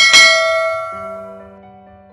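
A bright bell chime sound effect, struck once and ringing out, fading away over about a second and a half, with soft background music underneath.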